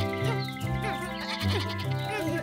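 Background music with a cartoon lamb bleating over it in a few short calls.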